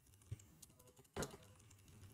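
A few faint keystrokes on a computer keyboard, typed sparsely; the clearest comes a little over a second in.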